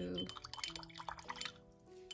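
A new paintbrush swished around in water to rinse out its sizing: quick light splashes and ticks for about a second and a half, then they die away. Soft background music plays underneath.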